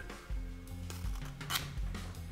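Background music with a steady low line throughout. About one and a half seconds in there is a brief, sharp slicing sound as a razor-sharp flesher knife cuts through a strip of tooling leather.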